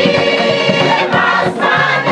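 Community choir singing a song in harmony on long held notes, the chord shifting about halfway through. A bamboo band's struck bamboo tubes keep the beat underneath.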